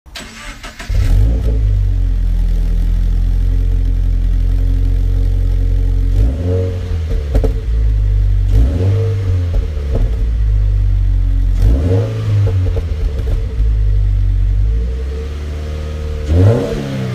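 Toyota 86's FA20 2.0 L naturally aspirated flat-four, heard through a BLITZ Nur-Spec C-Ti exhaust, starting up about a second in and idling steadily. From about six seconds it is revved in a series of short throttle blips.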